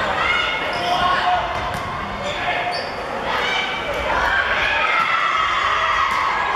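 Indoor volleyball rally: the ball is hit several times, sharp smacks that ring in a large hall, under continual shouting and calling from players and onlookers.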